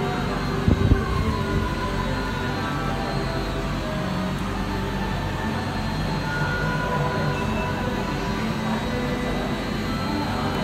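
Steady mechanical rumble of cable car station machinery, with a single low thump about a second in.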